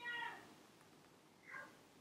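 A short, faint animal call: a high cry that falls at its end, followed about a second and a half later by a much fainter second sound.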